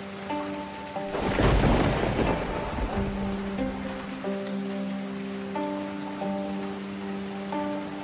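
Rain with a roll of thunder about a second in, over slow music of long held notes.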